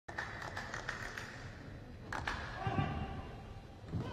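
Echoing ambience of a large gymnastics hall: indistinct voices with scattered thuds and knocks.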